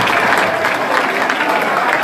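Audience applauding, with voices calling out over the clapping.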